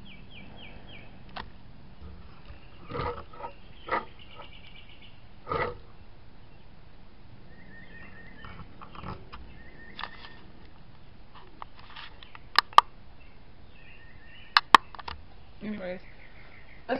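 Scattered soft knocks and handling noises, with two pairs of sharp clicks near the end, over a low steady background and faint repeated high chirps.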